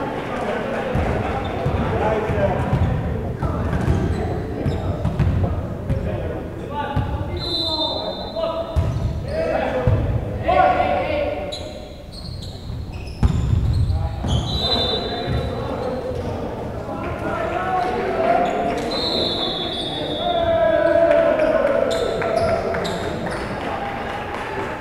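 A volleyball bouncing and being hit on a hardwood gym floor, among players' shouts and spectators' voices echoing through a large gym. The loudest sound is one sharp ball strike about thirteen seconds in, as a serve is made.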